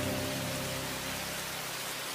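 Steady rain hiss with a low sustained chord of background music that fades out near the end.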